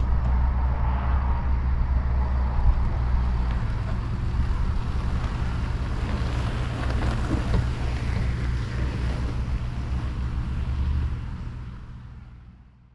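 Car towing a small touring caravan pulling away down a drive: steady engine and tyre noise with low wind rumble on the microphone, growing fainter and fading out near the end.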